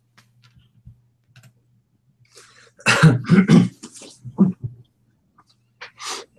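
A person coughing: a fit of four or five quick, loud coughs about three seconds in, with a shorter burst near the end, over a faint steady electrical hum on a video-call microphone.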